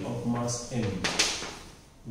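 A man speaking briefly, and chalk scratching and tapping on a blackboard as he writes, with a couple of short sharp strokes.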